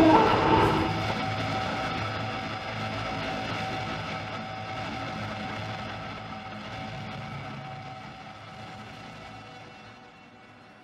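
Dark, ominous film-score music: a chord of sustained tones that is loudest at the start, with a brief falling sweep in the first second, then slowly fades away.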